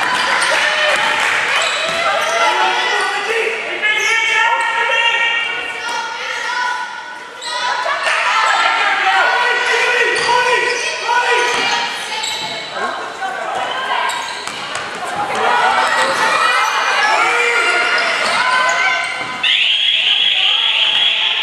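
A basketball being dribbled on a hardwood gym floor, with players' and onlookers' voices calling out in a large, echoing hall. A high, steady tone starts just before the end.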